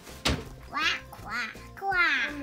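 Three short quacking calls about half a second apart, following a sharp click near the start.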